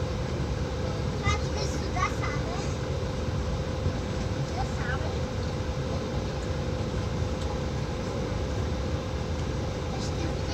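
Outdoor urban background: a steady low rumble with a constant hum, and faint voices in snatches about a second in and again around five seconds.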